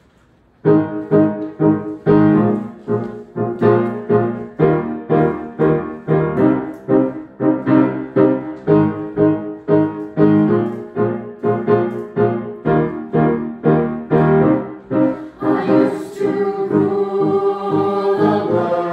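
Piano accompaniment starting about a second in, striking repeated chords in a steady pulse of about two a second. Near the end a mixed choir comes in with held sung notes over it.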